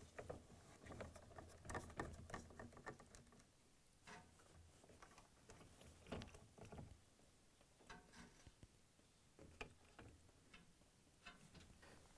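Faint, scattered clicks and light knocks of hand work on plastic parts: screws being backed out with a square-bit screwdriver and the plastic washer water inlet valve being worked loose from the dispenser housing.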